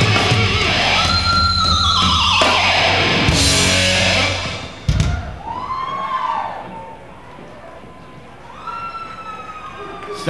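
Live rock band with electric guitar and drums playing the end of a song, which stops on a sharp final hit about five seconds in. After it the sound is much quieter, with a few rising-and-falling whistle-like tones.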